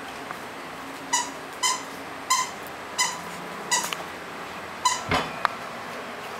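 A dog's squeaky toy squeaking six times in short, high, steady-pitched squeaks about two-thirds of a second apart. A rougher squeak and a sharp click follow near the end.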